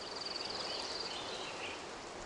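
Quiet outdoor nature ambience: a high, rapid trill lasting about a second, followed by a few softer chirps over a faint background hiss.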